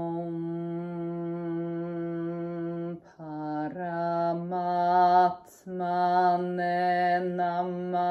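A woman chanting a mantra in a sung voice: one steady held note for about three seconds, then phrases that step up and down in pitch, broken by two short pauses for breath.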